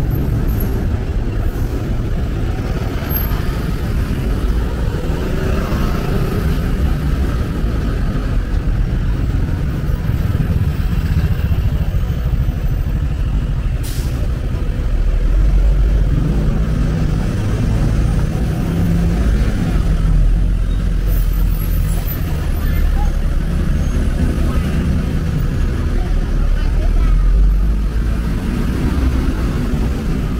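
Busy city street traffic: a steady din of passing cars, taxis and buses, with a deep rumble swelling a few times as heavier vehicles go by, and the voices of passers-by. A single sharp click about halfway through.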